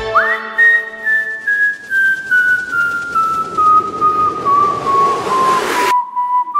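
A single high whistle tone in the soundtrack music. It swoops up just after the start, then falls slowly in small steps, ending at a much lower pitch near the end.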